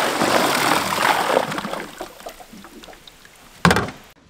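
MotorGuide trolling motor's propeller churning and splashing in shallow creek water, running at the surface and throwing spray. The churning is loud for about two seconds, then dies away, leaving small ticks. A brief, loud burst comes near the end.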